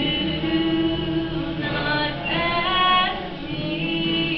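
A woman singing solo in long held notes, accompanying herself on acoustic guitar.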